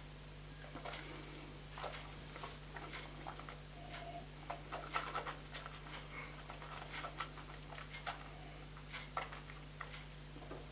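Faint, irregular wet clicks and smacks of tongue and lips, with breathing, as a sip of whisky is held and worked around the mouth, over a low steady hum.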